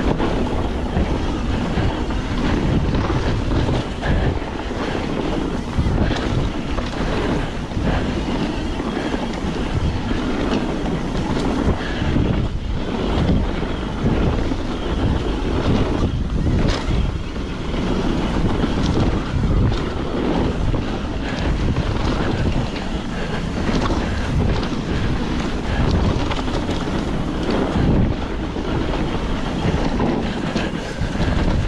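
Wind rushing over the microphone as a Nomad mountain bike rides fast down a dirt singletrack, with the tyres rolling over the dirt. The frame and chain give frequent short knocks and rattles over the bumps.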